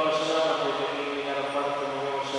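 A priest's voice chanting a prayer at Mass, holding long, steady pitches.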